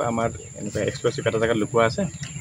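A man speaking to reporters, over a steady, unbroken high-pitched insect drone.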